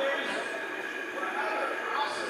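Indistinct background talking of several people, over a steady ambient hum with a faint high tone.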